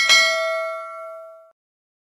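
A bright bell-chime 'ding' sound effect from a subscribe-button animation, marking the notification bell being clicked; it sounds once and rings out, fading away over about a second and a half.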